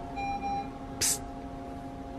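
A hospital bedside patient monitor sounds a short electronic alert tone in the first half-second, over the steady hum of room equipment. About a second in comes a brief sharp hiss, the loudest sound.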